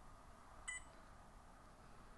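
A barcode scanner reading a barcode: one short, high electronic beep about a third of the way in, otherwise near silence.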